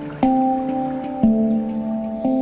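Handpan struck by hand: two notes about a second apart, each ringing on with steady overtones that slowly fade.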